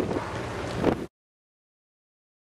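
Wind buffeting the microphone over a low, steady rumble on a ferry's open deck; the sound cuts off abruptly about a second in, leaving dead silence.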